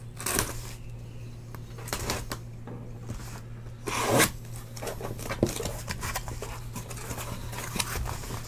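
Packing tape on a cardboard case being cut and torn open: a few short scraping, tearing strokes, the longest about four seconds in.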